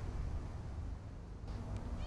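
Quiet outdoor background: a steady low rumble with no distinct sounds.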